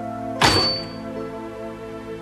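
A pop-up toaster ejecting its toast: one sharp metallic clack about half a second in, followed by a short high ringing ping that fades away.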